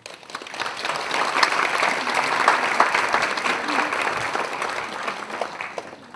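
Audience applauding: dense clapping that swells over the first second and tapers off near the end.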